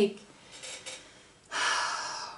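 A woman draws in a breath, a sudden hiss of about a second that starts halfway through, in a pause in her speech.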